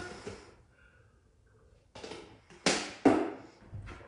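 Off-camera handling and movement noises from a person fetching a water bottle. After a second or so of near quiet come a few short, sharp noises, the two loudest close together in the middle.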